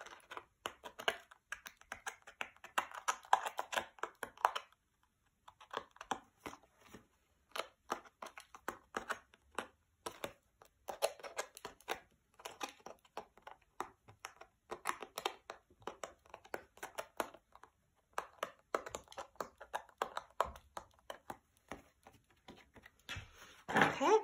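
Tiny paper pieces being pushed out of a die-cut snowflake frame with a pointed poking tool. It makes a run of light clicks and paper crackles in short spells, with brief pauses between them.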